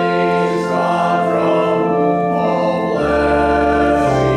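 Church organ playing sustained chords while voices sing along, with a new bass note entering about three seconds in.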